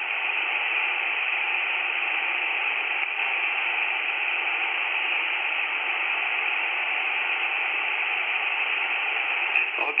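Steady, even hiss of shortwave band noise from a Tecsun PL-330 receiver in upper-sideband mode on the 20-metre amateur band, the open channel between transmissions, with no readable voice above it. A voice starts again at the very end.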